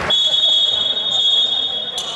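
A long, steady high-pitched signal tone in the gym, loud for about two seconds and then fading away, with a sharp knock near the end.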